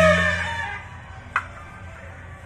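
A street wind band of trumpets and clarinets ends a phrase on a held note that fades away within the first second, leaving a pause broken by a single sharp tap about halfway through.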